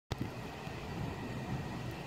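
Faint, steady low rumble of outdoor background noise with a light hiss, opening with a click as the recording starts.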